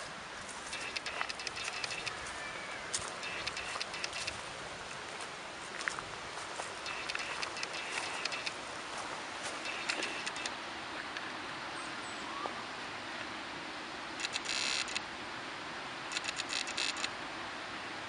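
Steady outdoor background noise with scattered soft clicks and rustles, and brief hissing rustles about fourteen and sixteen seconds in.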